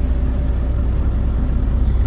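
Semi-truck's diesel engine idling, heard from inside the cab: a steady low rumble.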